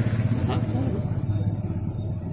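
A steady low motor hum, with a brief spoken "huh?" about half a second in.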